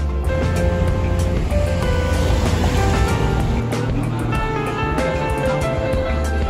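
Background music with held melodic notes over a steady bass, with a swell of hiss-like noise in the middle.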